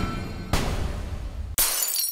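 Title-card sting: music with crashing, shattering sound effects, a fresh crash about half a second in and a bright, high one near the end.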